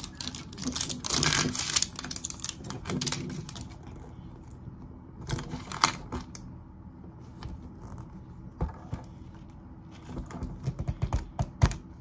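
A small plastic wrapper crinkles, then a hard plastic toy capsule ball is handled, giving scattered sharp clicks and taps and a quick run of clicks near the end.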